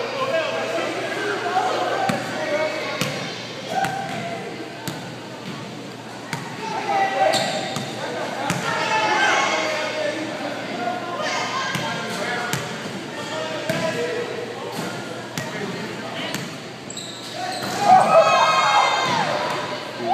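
A basketball bouncing on a hardwood gym floor at irregular intervals, each bounce echoing in the large hall, with voices talking in the background.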